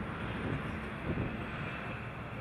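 Steady outdoor background noise: an even rush with no clear single source.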